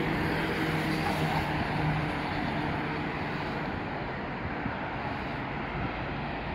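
City street traffic: cars passing over a steady rush of road noise, with a vehicle's engine hum in the first two seconds that fades away.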